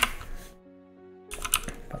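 Computer keyboard keys clicking: a quick cluster of presses at the start and another about a second and a half in, over soft background music.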